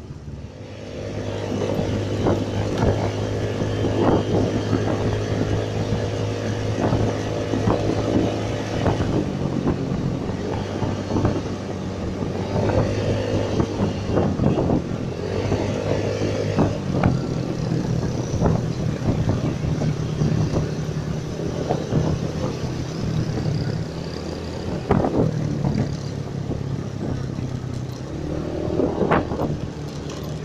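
Motorcycle engine pulling away from a standstill about a second in, then running on as it is ridden, its engine speed rising and falling. Wind is buffeting the microphone.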